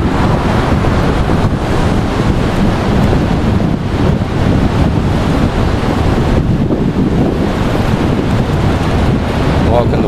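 Wind buffeting the camera's microphone: a loud, steady rumble with no break.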